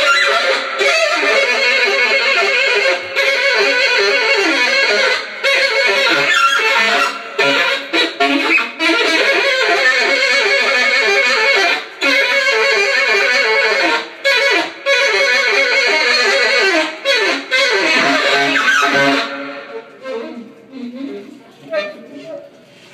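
Live band music with saxophone, loud and dense, that thins out suddenly about nineteen seconds in to quieter, sparse playing.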